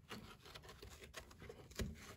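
Faint rubbing and light clicks of a foam air filter being pressed into the plastic air-filter housing of a STIHL BG 56 leaf blower, with one slightly louder knock near the end.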